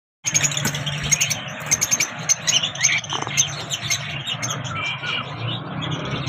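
A flock of caged lovebirds chirping and chattering, with many short, sharp calls overlapping rapidly.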